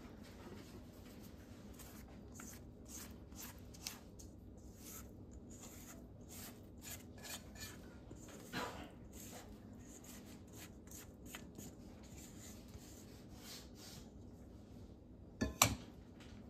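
Silicone spatula scraping thick cornbread batter out of a stainless steel mixing bowl into a glass baking dish: soft, irregular scrapes and wet smears. Near the end, a short clatter as the metal bowl is set down.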